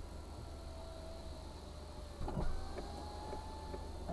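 Car engine idling, heard from inside the stationary car's cabin: a steady low hum with a faint whine that rises slightly in pitch, and a brief louder sound a little past halfway.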